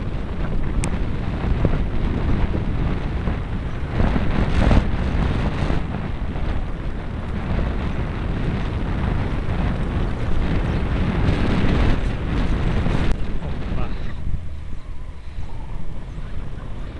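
Wind rushing over the microphone of a camera on a moving trekking bicycle, with tyre noise on the asphalt underneath. It swells about four seconds in and again around eleven to thirteen seconds, and eases near the end.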